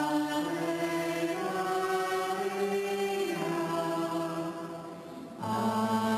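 Slow sung chant of long held notes, stepping to a new pitch every second or so. The sound eases off about five seconds in before the next phrase begins.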